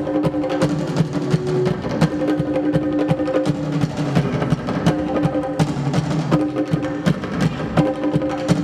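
Live band playing an instrumental passage: a drum kit and congas played with sticks, struck in a steady rhythm over held low notes.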